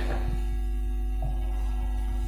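Steady low electrical hum from the sound system.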